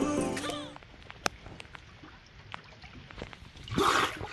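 Background music fades out in the first second, then faint scattered drips and clicks of water, and just before the end a short splash of water as a swimmer surfaces at the steps.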